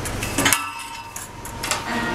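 Metal clinks and clanks of milking equipment being handled at the barn's milk pipeline, with a sharp clank about half a second in. A steady low hum sits under the start and then drops away.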